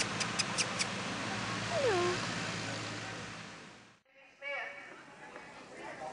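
A dog gives one short whine that falls in pitch about two seconds in, after a few quick clicks, over a steady hum. After a cut near the middle, voices come in.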